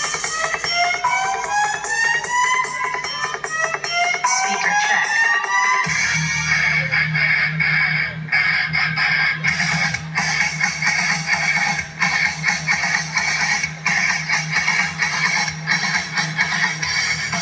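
Music played loud through miniature sound-system speaker stacks. For the first six seconds it is a run of repeated rising sweeping tones; about six seconds in, a heavy steady bass comes in under dense music.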